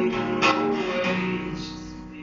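Acoustic guitar strummed, with one strong strum about half a second in and the chord ringing and fading away, recorded on a phone's microphone.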